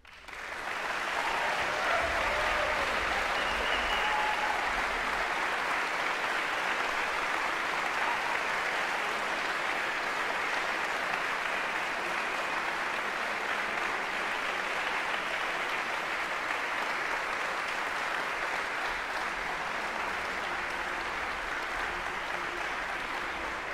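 Audience applause, starting suddenly, swelling over about a second and then holding steady.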